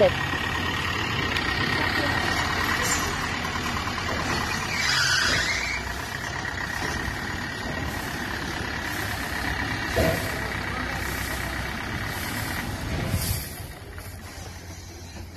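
Eicher truck's diesel engine idling steadily, with a short burst of hiss near the end.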